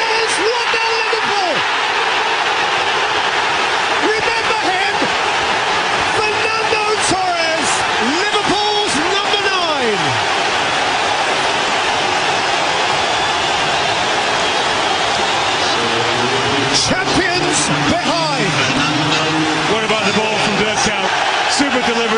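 Football stadium crowd noise: a steady roar with shouts and voices rising and falling over it, and a few sharp claps or knocks.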